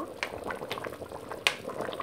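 Tripe and chickpea stew in a thick tomato sauce bubbling in a pot, popping irregularly as a wooden spoon stirs through it. A sharper click comes about one and a half seconds in.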